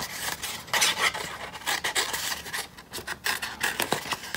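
Scissors cutting through thin paper-plate card, a run of irregular rasping snips.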